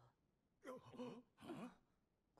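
Near silence, broken by three short, faint sounds of a person's voice, with gliding pitch, about halfway through.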